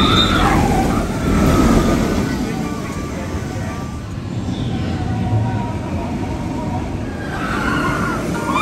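Steel roller coaster train rumbling past on its track with riders screaming, the screams loudest at the start and again near the end.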